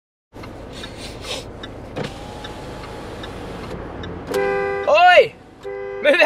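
Steady road noise inside a moving car's cabin. Near the end, a two-tone car horn sounds twice, with a man's voice gliding up and down between the two soundings.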